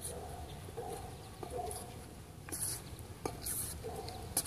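Brakeless BMX flatland bike rolling on concrete: a low tyre rumble under short squeaks. From about halfway in there is a hissing scuff roughly once a second, the rider's shoe brushing the tyre to control the bike.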